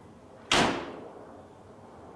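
A door of a 1981 Volkswagen combi (Type 2 van) is slammed shut once, about half a second in: a single sharp bang that dies away within half a second.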